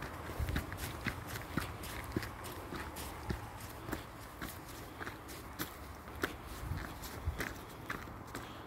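Footsteps crunching on a gravel and stone footpath at a steady walking pace, about two steps a second.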